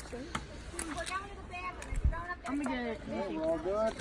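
Several people talking at a distance, not close to the microphone, with a few faint clicks and a dull low thump about halfway through.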